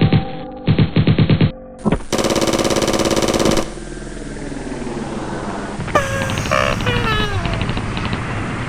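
Sound-effect machine-gun fire in rapid bursts, stopping about a second and a half in. A loud, tone-heavy blare follows for about a second and a half, then a rising hiss with several falling whistles near the end.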